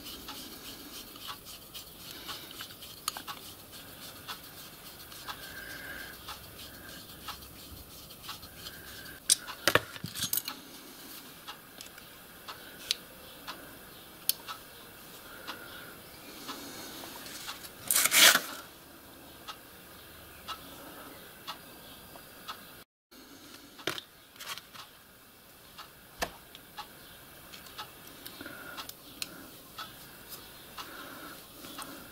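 Small brass valve parts and a steel screwdriver being handled on a workbench: irregular light clicks and clinks of metal, with a louder clatter about halfway through.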